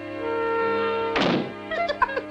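A single wooden thunk about a second in, the cartoon sound effect of a door being shoved into its doorway, over held notes of background music.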